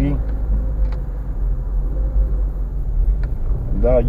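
Car driving slowly, heard from inside the cabin: a steady low engine and road rumble.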